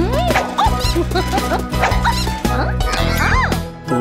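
Upbeat children's song backing music with a steady beat, in an instrumental break. Over it, cartoon bunny voices make a string of short squeaky calls that rise and fall in pitch, the highest and longest about three and a half seconds in.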